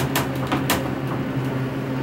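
ThyssenKrupp elevator car running with a steady low hum, with a few sharp clicks in the first second.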